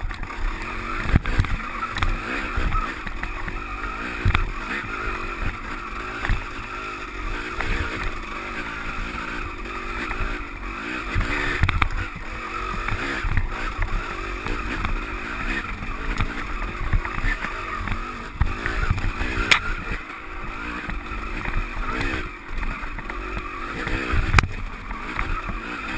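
KTM dirt bike engine running under varying throttle as it rides a rough trail, with repeated knocks and jolts from the bumps and wind buffeting the camera microphone.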